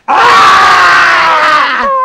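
A woman's loud, rough yell in the manner of a lion's roar, sliding down in pitch for nearly two seconds and cutting off with a soft thump near the end.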